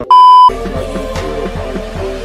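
Colour-bar test tone: a short, very loud steady beep lasting about half a second, then background music with a steady beat.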